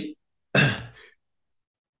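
A man's short voiced sigh about half a second in, fading away within half a second.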